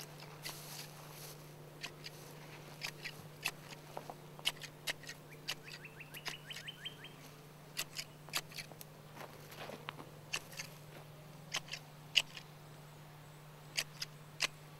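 Hand shears snipping the long new growth off a fir Christmas tree: short sharp cuts at an irregular pace, often more than one a second.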